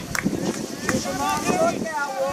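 Several people's voices calling out at once, overlapping high shouts from about a second in, words not clear. A couple of short sharp taps come before them.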